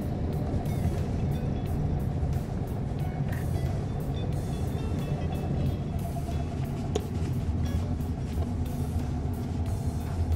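Steady low engine and road rumble inside a moving car's cabin, with music playing over it.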